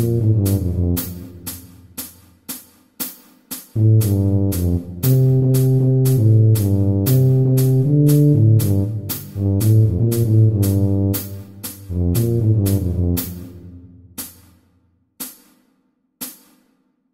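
Tuba playing a pop melody in phrases with short rests, over a steady ticking percussion track of about two ticks a second. The tuba drops out about two seconds before the end while the ticks carry on.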